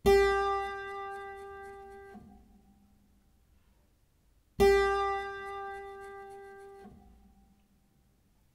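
Clavichord sounding the same single note twice, each held about two seconds with bebung. Eight gentle repeated finger pressures on the held key make the tone pulse in rapid, even beats. Each note stops sharply when the key is released.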